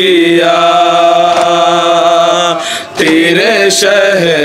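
Male voices chanting a noha, a Shia Muharram lament, unaccompanied. The lead voice holds one long steady note, breaks briefly about three seconds in, then starts a new phrase.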